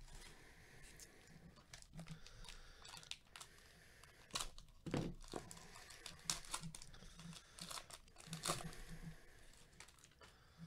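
Foil wrapper of a Panini Prizm baseball card pack being torn open and crinkled by gloved hands: a long run of sharp, irregular crackles, with the loudest rips a little before the middle and again later on.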